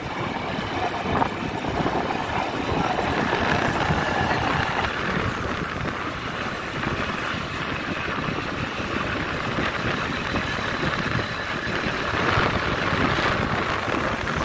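Motorcycle taxi riding along a road: its engine running steadily under a continuous rush of road noise.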